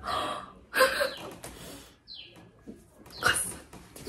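A woman gasping and exhaling sharply in mock shock: three breathy bursts, one at the start, one about a second in and one near the end, with a short squeak between them.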